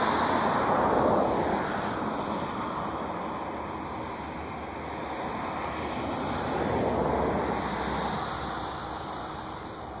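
A rushing noise that swells and fades twice, first about a second in and again around seven seconds.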